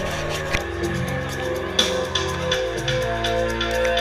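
Electronic dance music from a DJ set played loud over a club sound system, with a steady hi-hat pattern over sustained bass and synth notes. A sharp click cuts through about two seconds in.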